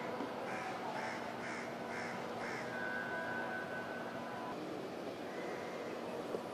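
A bird calling five times in a quick, even series, about two calls a second, over a steady background hum.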